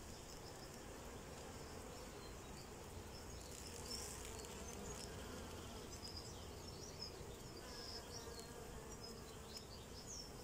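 Honeybees buzzing, a faint, steady hum from the colony in an opened nuc box.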